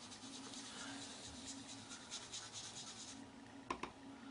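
Sponge dauber dabbing ink onto cardstock around a balloon die used as a mask: a quick run of faint, soft pats that stops about three seconds in. A couple of light clicks follow near the end.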